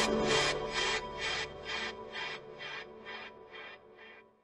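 Tail end of a TV show's theme music fading out: a rhythmic swishing pulse about two and a half times a second over a held chord, dying away about four seconds in.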